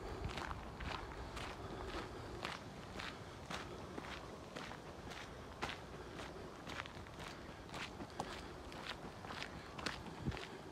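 Footsteps of a person walking steadily along a dirt track, about two steps a second.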